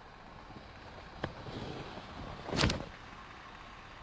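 Quiet steady background noise, with a faint click a little after a second in and one short, louder burst of noise just past halfway.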